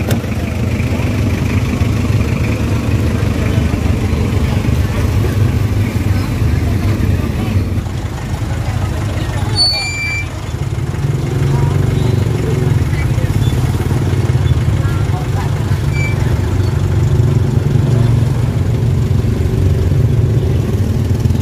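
Steady low rumble of a vehicle engine idling close by, growing a little stronger about halfway through, with people talking in the background.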